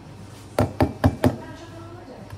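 Four quick, heavy knocks in a row at an espresso machine, typical of a barista rapping a portafilter against a knock box to empty the spent coffee puck.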